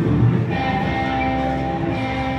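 Live country band playing through a PA. Long held notes enter about half a second in over a low chord, with fiddle, electric guitars, bass, keyboard and drums.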